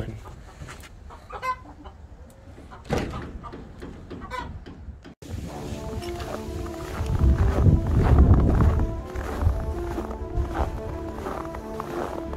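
Chickens clucking now and then. About five seconds in, the sound cuts to background music with steady held notes, over a low rumble of wind on the microphone that is loudest near the middle of that stretch.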